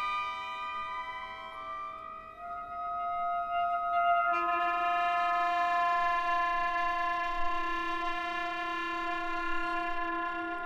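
Alto saxophone and symphony orchestra playing a contemporary saxophone concerto: long held notes that shift to a new chord about four seconds in and are then sustained.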